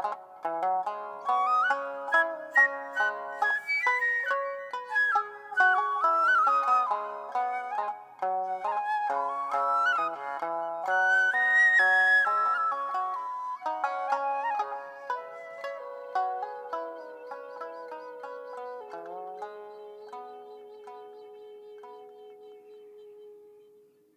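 Japanese transverse bamboo flute and shamisen playing a traditional duet, the flute melody over the shamisen's plectrum-struck notes. The strokes thin out in the second half and the piece ends on one long held note that fades away.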